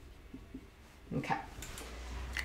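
Dry-erase marker writing on a whiteboard: faint short strokes.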